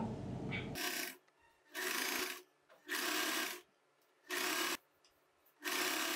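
Electric domestic sewing machine stitching a curved neckline facing in short runs: about five brief bursts of running, each under a second, with pauses between them as the fabric is turned around the curve.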